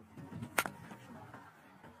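Cricket bat striking the ball once, a single sharp crack about half a second in, over faint stadium background.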